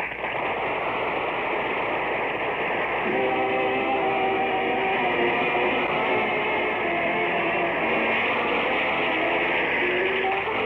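Orchestral closing music of an old radio broadcast, with held notes coming in about three seconds in, under heavy, steady noise from a poor master-tape transfer. The host puts the bad sound at the end of the show down to the tape slipping as the reel ran out.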